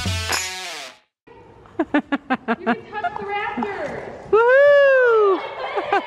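Background music that cuts off about a second in. Then comes a woman's laughter and, midway, one loud long whoop that rises and falls in pitch.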